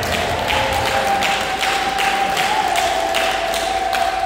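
Hands clapping in a steady rhythm, about two and a half claps a second, with a long held tone over the claps.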